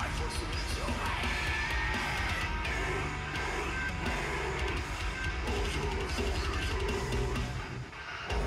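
Deathcore song playing: heavy drums and distorted guitars under harsh yelled vocals, with a brief break in the music just before the end.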